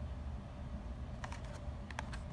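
A few light clicks of a Hot Wheels blister card's plastic bubble and cardboard being handled and turned over in the hands, over a low steady rumble.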